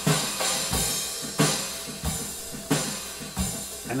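Studio playback of a looped drum section made of layered recorded drum tracks: two live drum-kit parts with an added percussion part. A steady beat of strong hits, a low kick alternating with a brighter snare roughly every two-thirds of a second, with smaller percussion hits in between.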